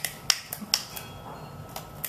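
A series of sharp finger snaps, irregularly spaced: several in quick succession in the first second, then another near the end.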